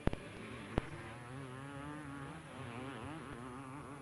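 Motocross motorcycle engines heard from the trackside, their pitch rising and falling as the riders work the throttle. Two sharp clicks stand out in the first second.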